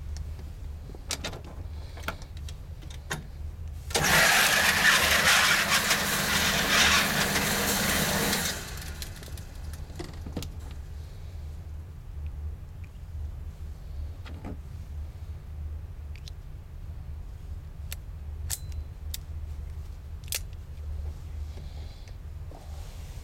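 Electric target carrier on an indoor range's overhead rail, its motor running loudly and steadily for about four and a half seconds as it brings the paper target back. It starts about four seconds in and cuts off suddenly. A steady low hum runs underneath, with a few faint clicks before and after.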